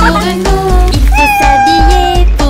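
Upbeat children's song music, over which a cartoon cat gives one long, drawn-out meow in the second half.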